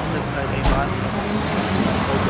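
Motocross motorcycle engines running on the track, a steady low drone behind the talking.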